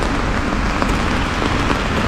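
Steady rain falling on an umbrella held overhead, with the hiss of a wet street where cars are moving.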